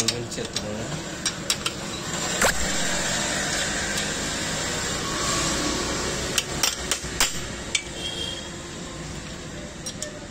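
Steel spanner clinking and tapping against the rear brake stay bolt and nut of a motorcycle's drum brake as the nut is worked loose: a scattering of sharp metallic clicks. A steady rushing noise swells in the middle and fades again.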